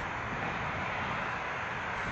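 Steady outdoor urban background noise: an even, distant rumble with no distinct events.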